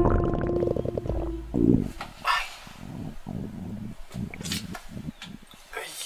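A hungry stomach growling in irregular, gurgling rumbles, with a man's pained breaths and groans. Background music stops about a second and a half in, just before the first growl.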